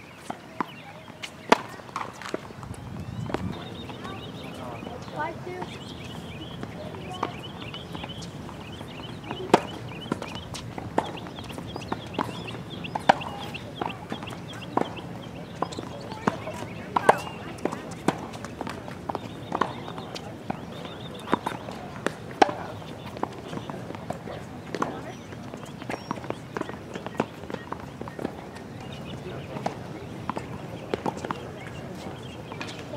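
Tennis balls struck by rackets and bouncing on a hard court during a rally: sharp, short pops every second or two at an uneven pace.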